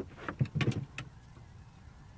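A quick cluster of knocks and thumps on the fishing boat, the loudest about half a second in, while a fish is being fought. After that only a steady low rumble.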